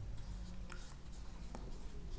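Marker pen writing on a whiteboard: faint scratching strokes of the felt tip, with a couple of light taps.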